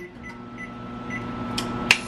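Microwave oven running with a steady hum while it heats a bowl of food. Two sharp clicks come near the end.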